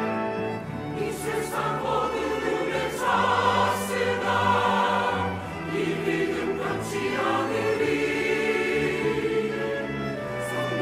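Large mixed church choir singing a Korean-language hymn in harmony, accompanied by a chamber orchestra and piano. The choir comes in about a second in over the orchestra's held notes.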